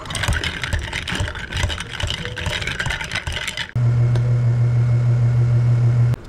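A bar spoon stirring ice in a tall glass of milk, the ice clinking and rattling rapidly against the glass for about four seconds. It then gives way abruptly to a loud, steady, low machine hum.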